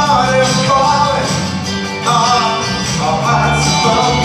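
A male singer singing live into a microphone over 60s–70s style backing music, amplified through PA speakers in a large hall.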